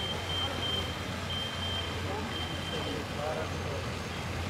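Steady outdoor city ambience: a low traffic hum with faint, distant voices.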